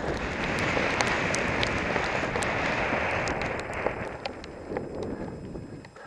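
Storm wind buffeting the helmet-mounted camera's microphone during a fast downhill mountain-bike descent on a wet, muddy trail, with scattered sharp clicks throughout. The wind noise is loudest for the first four seconds, then eases off.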